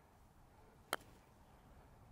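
A golf club striking a golf ball once: a single short, sharp click about a second in, otherwise near silence.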